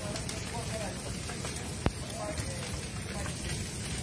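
Large vehicle fire: the flames of a burning overturned truck give a steady rushing noise with scattered crackles, and one sharp pop a little under two seconds in.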